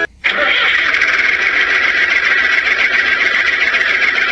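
A plastic toy tractor driving off with its trolley: a loud, steady whirring hiss that starts a moment after a brief silence.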